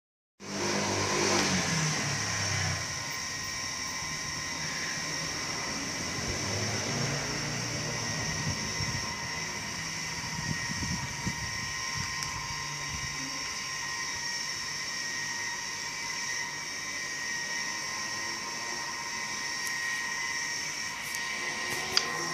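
A steady machine-like hum with several constant high whining tones, a little louder for the first two or three seconds.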